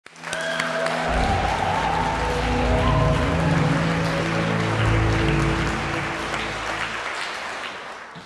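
Intro music of held chords, with a deep bass coming in about a second in, over applause. Both fade toward the end.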